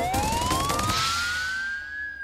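Siren sound effect: a single wail that rises slowly in pitch across two seconds and begins to fall back at the end, over the fading tail of the programme's theme music.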